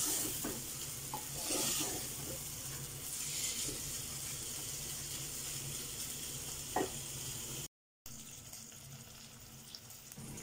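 Chicken pieces sizzling as they fry in oil in an aluminium pot, with a spatula stirring and scraping against the pot. The sound cuts out for a moment just before eight seconds in, and the sizzle is quieter afterwards.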